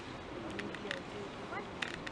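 Indistinct voices of people talking in the background, with a few sharp clicks and a short rising chirp near the end.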